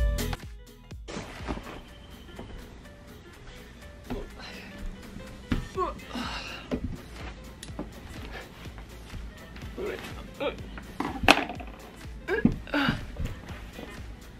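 Background music cuts off about a second in, leaving quiet room sound with a few scattered knocks and thuds, the sharpest a little after eleven seconds, and brief, indistinct murmurs of a woman's voice.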